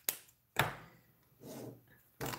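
Plastic Stampin' Blends alcohol markers being handled on a desk: two sharp clicks about half a second apart, then a softer rub near the end.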